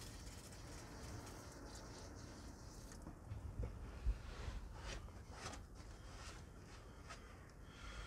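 Brief faint hiss of an aerosol can of brake cleaner spraying onto a differential drain plug at the start, then a low steady hum with a few small knocks and rubs, one sharper click about four seconds in.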